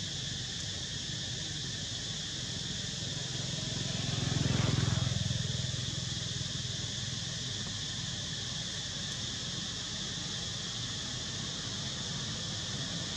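Steady outdoor background noise: a high, even drone over a low rumble. The rumble swells and fades again about four to five seconds in.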